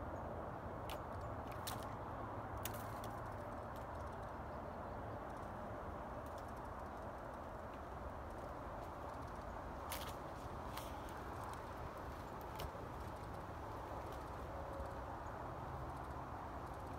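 Steady outdoor background noise with a few sharp, faint clicks scattered through it: a cluster in the first three seconds and another from about ten seconds in.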